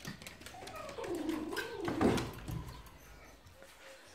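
An animal's drawn-out, wavering call that rises and falls in pitch, starting about a second in and lasting over a second, with a few light clicks of handling around it.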